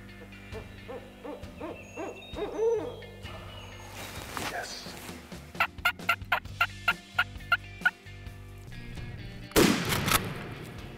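Barred owl hooting in a series of curving, rising and falling calls, then a hunter's mouth-blown turkey call yelping: a quick, even string of about ten notes. A loud brief burst comes near the end.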